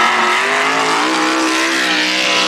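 A drag-racing gasser's engine held at high revs during a burnout, its note steady and creeping slightly upward, with the hiss of the spinning rear tire.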